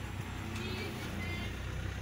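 Car engine and drivetrain heard from inside the cabin, a steady low rumble while driving slowly, with faint voices in the background.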